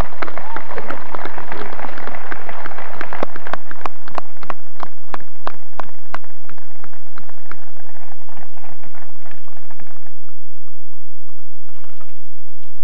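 Audience applauding: a dense patter of many hands at first, with a few loud separate claps standing out in the middle, thinning and dying away near the end.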